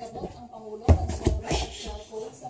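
Body thuds of a gymnast landing on a carpeted floor after a cartwheel attempt on a soft floor beam: one heavy thump about a second in, then a few lighter knocks. Background music plays under it.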